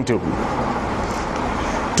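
Steady rushing noise of road traffic passing.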